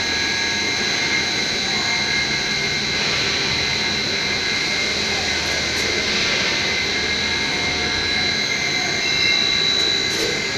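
Hot foil slitter-rewinder running at speed, slitting foil into narrow strips and winding them onto cores: a steady mechanical whir with a high, unchanging tone on top.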